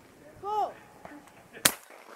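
A shooter's short shouted call, typical of the 'pull' for a trap target, then about a second later a single sharp shotgun shot at the thrown clay.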